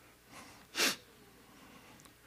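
A man's single short, sharp burst of breath, like a sniff or snort, into a close face-worn microphone about three quarters of a second in.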